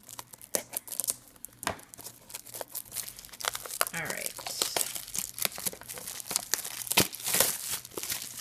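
Clear plastic shrink wrap crinkling and tearing as it is picked at and peeled off a cardboard blind box: a dense run of sharp crackles, loudest near the end.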